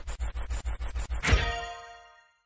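Edited-in transition sound effect: a fast run of clicks, about eight a second, then a single loud ringing metallic hit just past halfway that dies away near the end.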